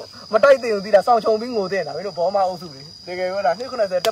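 A man talking into a handheld microphone, over a steady high-pitched insect drone.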